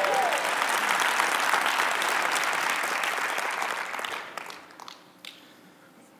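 Congregation applauding after a rousing line in a sermon, dying away after about four seconds.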